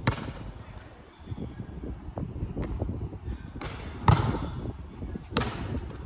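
Basketball knocking on a concrete court and hoop while shots are taken: a sharp knock right at the start, the loudest one about four seconds in, and another a little over a second later.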